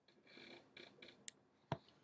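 Faint clicks and soft rustling: a few soft rustles in the first second, then a sharp tick a little past the middle and a duller click shortly after.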